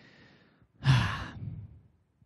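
A man's sigh close into a handheld microphone: a faint in-breath, then about a second in a loud, breathy out-breath with a low voiced note that falls away over under a second.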